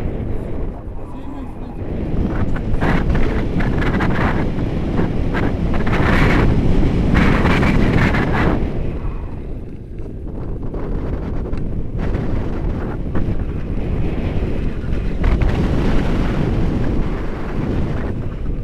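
Airflow of a paraglider in flight rushing over the camera's microphone, a continuous buffeting roar. It gusts louder from about three seconds in, then eases around ten seconds.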